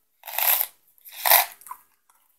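Smarties candies being tipped from their tube into the mouth and crunched, heard as two short noisy bursts about a second apart.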